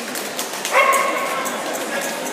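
A dog gives a single pitched yelping bark about three-quarters of a second in, held briefly, over people talking in a large hall.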